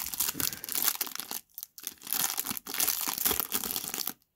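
Foil trading-card pack wrapper crinkling and tearing as it is pulled open by hand, with a brief pause about one and a half seconds in.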